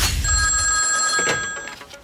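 A telephone ringing: one steady ring of about a second and a half, with a low rumble fading out under its start.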